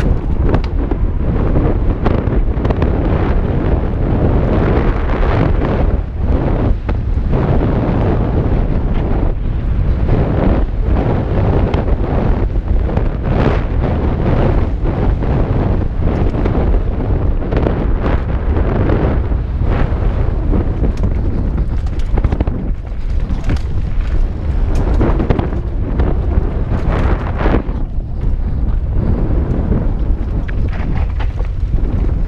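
Loud wind buffeting on a GoPro's microphone during a fast mountain-bike descent on a dirt trail, with frequent short knocks and rattles from the bike and tyres hitting bumps.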